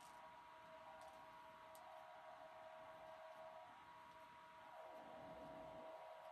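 Near silence: faint steady room noise from an electric fan running, with a thin steady hum.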